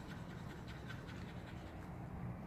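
Faint scratching and light ticks from a small cup of resin colour being handled in gloved hands, most of them in the first second, over a steady low hum.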